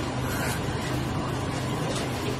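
Steady low hum under even background noise, with no distinct events.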